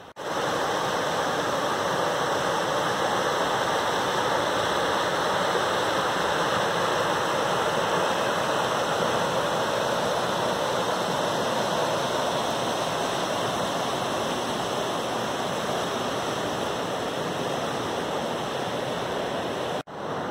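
Rushing water of a rocky creek running through rapids: a steady, even rush that starts and stops abruptly.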